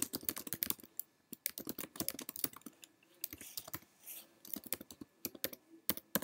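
Typing on a computer keyboard: quick runs of irregular key clicks with short pauses between them, as a short line of text is typed.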